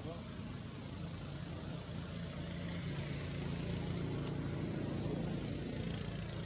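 A motor vehicle's engine running steadily nearby, getting louder about halfway through, over an even outdoor background hiss.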